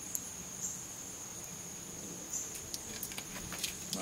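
Crickets trilling steadily and high-pitched in the background, with a few faint ticks.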